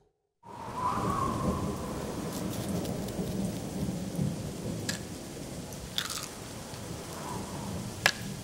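Thunderstorm: steady rain with a rolling rumble of thunder, starting about half a second in. Two sharp clicks come through about five and six seconds in.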